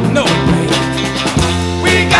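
Classic rock song playing: electric guitar over bass and drums, with a steady beat.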